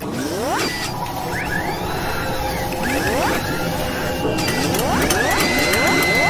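Sound-effect track of an animated logo outro: dense mechanical whirring and clicking with repeated rising whooshes, and a steady high tone coming in about five seconds in.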